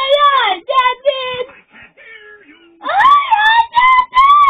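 Children's chorus shouting "Aye, aye, captain!" from a television speaker, twice: near the start and again from about three seconds in, with a quieter, lower man's voice between.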